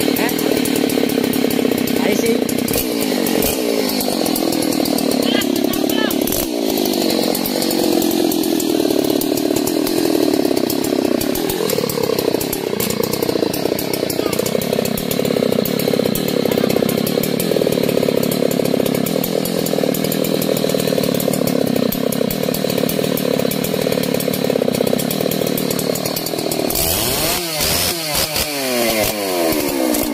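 Husqvarna 3120 XP chainsaw's large two-stroke engine running at high revs while cutting through a thick trembesi log, its pitch sagging now and then as the chain takes load. About 27 seconds in, the engine is revved up and down rapidly several times.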